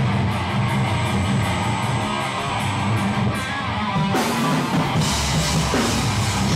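Heavy hardcore band playing live: distorted electric guitar and bass chugging a low riff over light cymbal ticks. About four seconds in, the drums and crashing cymbals come in full and the whole band plays loud.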